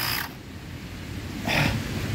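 Carsun cordless tyre inflator's small compressor running with a high whine, then cutting off suddenly a quarter second in. About a second later there is a short burst of hiss-like noise.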